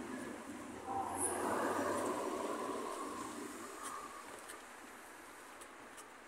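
Outdoor street noise: a vehicle passing, swelling about a second in and fading away over the next few seconds.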